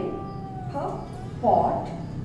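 A woman's voice speaking short words slowly, with one long drawn-out vowel near the start.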